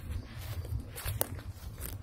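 Footsteps on leaf-strewn grass and dirt, a few irregular steps with a steady low rumble underneath.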